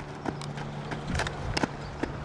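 A few sharp knocks of a softball smacking into leather fielding gloves, mixed with cleats on infield dirt. The loudest pops come about one and a half seconds in.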